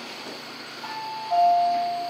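Jiam Tech elevator's arrival chime: a two-note ding-dong, a higher note about a second in followed by a lower one, ringing out and fading as the car reaches the floor.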